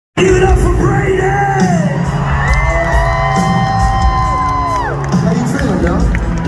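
Live rock band playing in an arena, heard from the audience, with the crowd cheering and whooping over it. A long held note rises, holds and falls away about halfway through.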